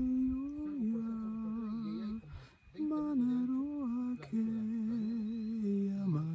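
A man's voice intoning long, low held notes with a slow wavering pitch, stopping for a breath about two and a half seconds in.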